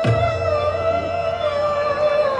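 Hindustani classical female voice holding a long, wavering note in raga Maru Bihag, over harmonium and tanpura drone. A deep tabla bass stroke sounds right at the start and rings with a falling pitch.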